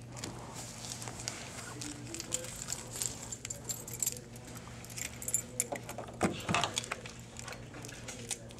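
Keys jingling, with small scratches and clicks, as a key is used to cut open the plastic wrap on a stack of trading cards.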